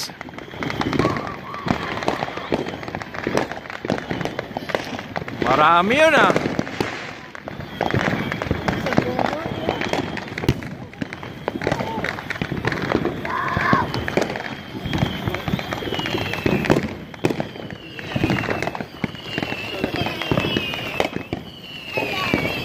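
Neighbourhood fireworks and firecrackers popping and crackling without a break, with voices in the background. In the second half a high whistle slides downward again and again.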